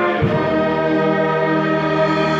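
School wind orchestra with clarinets and brass, together with a standing group of singers, performing a Christmas carol. After a low thud near the start, voices and band hold one long sustained chord.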